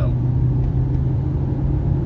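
Road and engine noise heard inside the cabin of a moving car: a steady low rumble with a constant hum.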